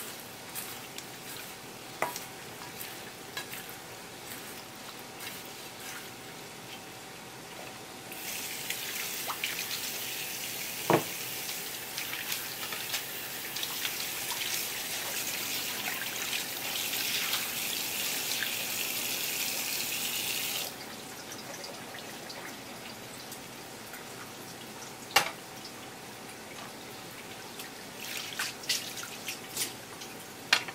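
Kitchen tap running for about thirteen seconds as hands rinse under the stream, turned on about eight seconds in and cut off abruptly. Before and after it come scattered small clicks and a few sharp knocks of handling at the cutting board.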